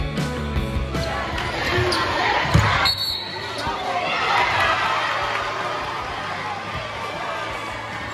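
Basketball game in a gymnasium: crowd noise and voices echoing through the hall, with basketball bounces and a sharp bang about two and a half seconds in. A guitar music bed fades out in the first second.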